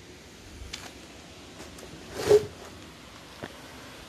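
Footsteps on fallen plaster and debris strewn across a floor, a few faint scuffs with one louder step about two seconds in.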